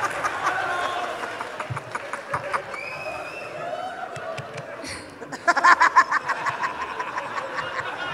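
Live audience laughing and chattering, then loud clapping that breaks out about five and a half seconds in.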